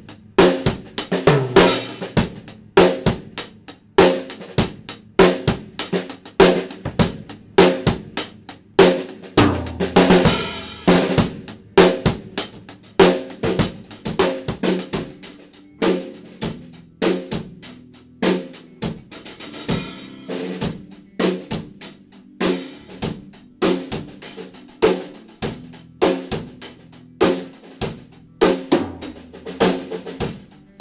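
Rock drum kit playing a steady groove of kick, snare and hi-hat, with cymbal crashes about ten seconds in and again near twenty seconds, and low sustained notes under the drums.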